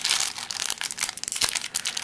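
Foil wrapper of a Pokémon XY Flashfire booster pack crinkling and tearing as it is ripped open by hand: a dense run of sharp crackles.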